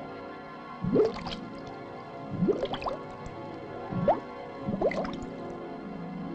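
Cartoon soundtrack music holding sustained chords, with four rising, bubbly bloop sound effects for underwater air bubbles.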